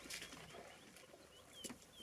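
Near silence, with a few faint, short bird chirps, each sliding down in pitch, mostly in the second half, and a faint click.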